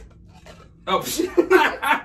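A man exclaims "oh" about a second in, and laughter follows, after a short quiet moment.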